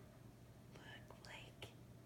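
Near silence: faint whispering about a second in, over a steady low hum.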